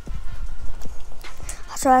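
A nylon hiking backpack being handled, its straps and plastic buckles knocking and rustling in a quick, irregular series of light knocks.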